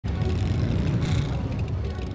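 Motorcycle engines running, a steady low sound.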